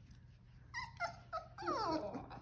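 Four-week-old Old English Sheepdog puppy whimpering: three short high yips starting a little before a second in, then a longer whine that falls in pitch near the end.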